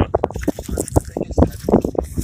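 Handling noise against a cardboard box: a quick run of irregular taps, rubs and scrapes.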